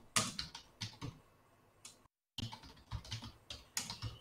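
Typing on a computer keyboard: a quick run of key clicks, a pause, then another run of clicks. The audio cuts out completely for a moment about two seconds in.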